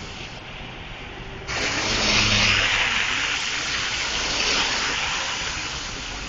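A loud, even rushing noise starts abruptly about a second and a half in, swells, then slowly fades.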